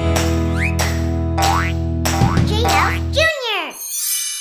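Edited-in cartoon music: a held low chord with rising whistle-like sound effects over it. About three seconds in the chord cuts off and a falling 'boing' glide drops away, followed by a brief high hiss of a transition effect at the very end.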